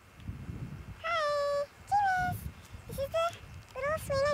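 A baby's high-pitched vocalizing: a few short calls, each held at a steady pitch for about half a second, starting about a second in. They sound over a low rumble of wind or handling noise on the camcorder microphone.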